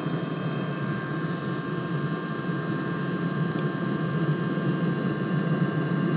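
Webasto water heater firing up just after its burner has lit. The combustion fan runs with a steady whine over the noise of the burner, and the sound slowly grows louder.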